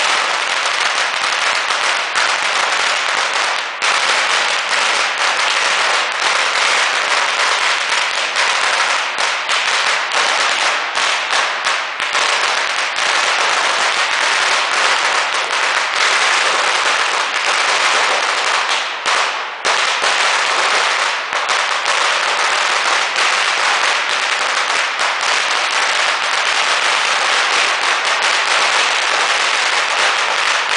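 A very long string of red Chinese firecrackers going off in a dense, continuous crackle of rapid bangs, loud and unbroken apart from two brief lulls, about four seconds in and a little before the twenty-second mark.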